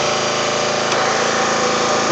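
Small engine running steadily at a constant speed.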